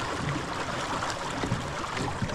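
Steady rush of water past the hull and wake of a small dinghy under way on an electric outboard.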